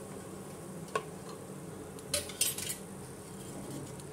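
Wooden spatula stirring whole spices and fried onion slices in hot oil in a metal pot, with a low sizzle as the spices are tempered. A single tap comes about a second in, and a short run of clattering scrapes against the pot comes about two seconds in.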